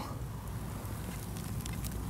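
Quiet rustling with a few faint crackles of leaf litter and loose soil being disturbed at a freshly dug hole.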